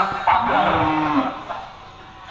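A cow lowing: one moo lasting about a second, ending about halfway through.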